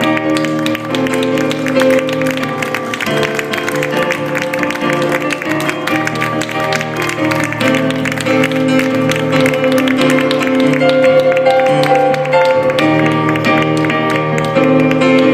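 Digital stage piano playing a slow instrumental passage of sustained chords, the chord changing every second or two.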